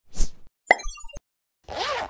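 Cartoon sound effects for an animated logo: a short whoosh, a sharp pop followed by quick bubbly blips and a click, then a swoosh with a sliding up-and-down tone near the end.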